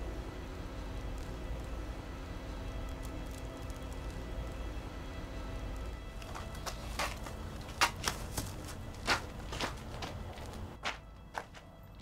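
Quiet film soundtrack: faint sustained music over a low hum, joined about halfway through by a run of sharp, irregular taps, a few of them louder than the rest.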